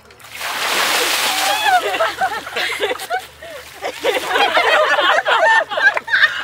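A tub of ice water is dumped over two people: a loud splash and rush of water lasting about a second, then excited yelps and voices from the soaked pair and those around them.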